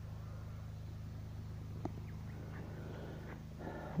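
Faint, steady rush of a creek's flowing water over a low, even hum, with one faint click about two seconds in.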